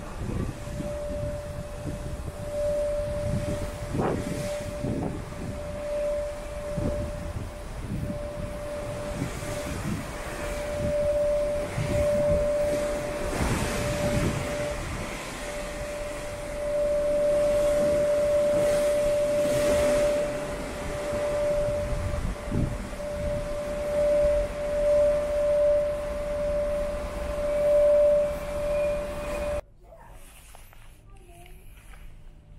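Gusting wind buffeting the microphone on an open ship's deck, with a steady high tone that holds one pitch throughout and swells and fades with the gusts. It all cuts off abruptly just before the end.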